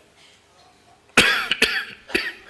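A man coughing close to a microphone: two coughs in quick succession just over a second in, the first the loudest.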